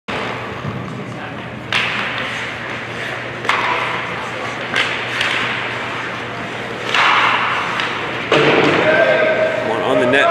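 Ice hockey play echoing around a large arena: about five sharp knocks of puck, sticks and players against the boards and ice, each ringing out in the hall, with players shouting near the end.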